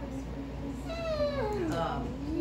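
A single drawn-out vocal call, about a second long, sliding steadily down in pitch near the end.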